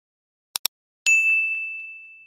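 Two quick mouse-click sound effects, then a single bright notification-bell ding that strikes and fades away over about a second.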